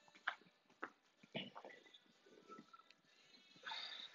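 Near silence, with a few faint, short clicks and knocks spread through it.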